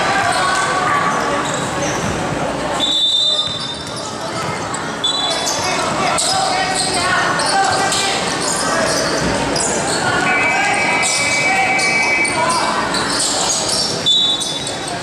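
Sounds of a basketball game in a large gym: the ball bouncing on the court, brief shoe squeaks, and players and spectators calling out, all echoing in the hall.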